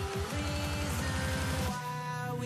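Background music: a fast, even run of repeated low notes that gives way to held tones near the end.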